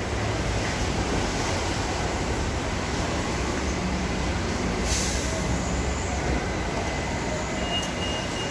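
Steady low rumble with a hiss over it, as heard while walking through an airport terminal concourse, with a brief rustle about five seconds in. A faint steady high tone comes in near the end.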